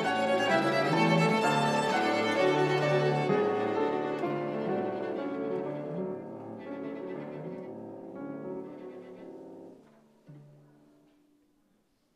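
String quartet playing: violins and cello sounding together, loud at first, then growing quieter from about four seconds in and dying away around ten seconds, with one last soft low note before the music stops.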